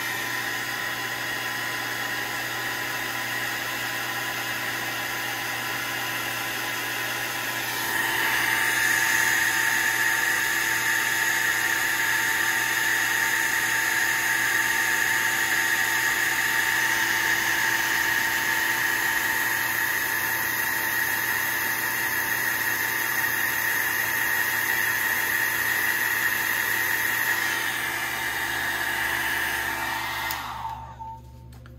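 Small handheld hair dryer running on its low setting: a steady blowing whir with a motor hum, which grows louder about a quarter of the way in.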